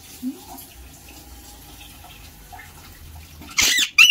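Faint running water from a kitchen tap, then, near the end, an Alexandrine parakeet gives a loud, harsh screech while flapping its wings.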